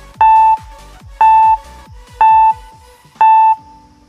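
Quiz countdown timer beeping four times, once a second: short, loud, steady electronic beeps, over background music with a steady beat that stops about three seconds in.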